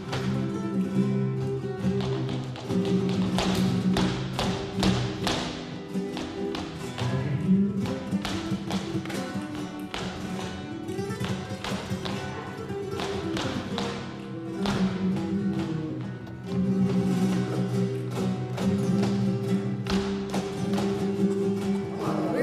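Flamenco footwork (zapateado), with rapid runs of shoe strikes on the stage over flamenco guitar playing tientos.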